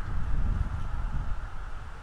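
Wind buffeting an outdoor nest-camera microphone: an uneven low rumble that eases off in the second half, over a steady hiss.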